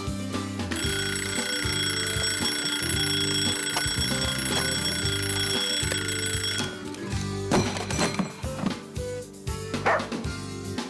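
Alarm clock ringing with a steady, high-pitched tone, starting about a second in and cutting off suddenly after about six seconds, over background music.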